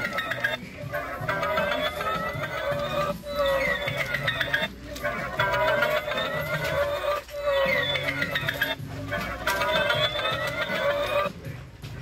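Animated plush Halloween spider toy playing music in short phrases of a second or two, with brief breaks between them.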